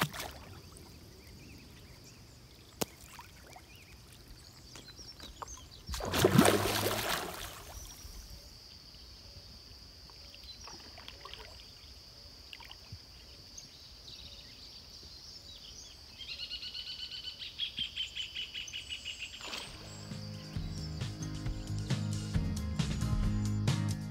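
A large tamba splashing and slurping as it takes bread at the water's surface, one loud splash about six seconds in, over a steady high-pitched hum. A bird trills for a few seconds near the end, and then background music comes in.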